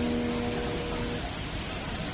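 Steady rushing noise of a flash-flood torrent in spate, mixed with heavy rain.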